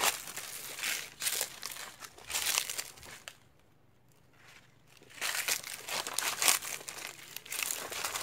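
Footsteps crunching through dry fallen leaves, a run of irregular crunches that stops for a second or two in the middle and then starts again.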